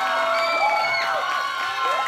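Audience cheering, with many high voices whooping and screaming over one another.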